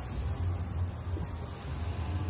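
A low, steady outdoor rumble with no distinct events.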